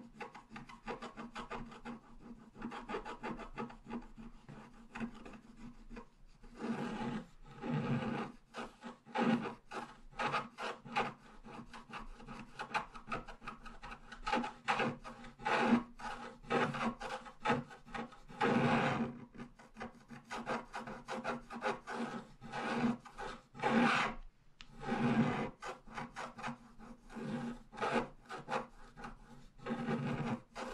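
Wooden stylus scratching the black coating off a scratch-art card in many quick, short strokes. The strokes are light for the first few seconds and grow louder and denser from about six seconds in, with a few longer scrapes among them.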